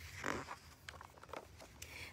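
A page of a large picture book being turned: one short papery swish about a quarter second in, followed by a few faint ticks.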